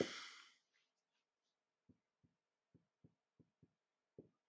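Near silence with a run of faint, soft, low taps starting about halfway through, about six of them at uneven spacing.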